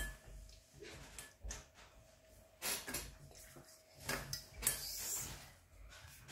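Quiet scratching of a pen writing on paper, in short irregular strokes, with a few light knocks and rustles of hands on the table.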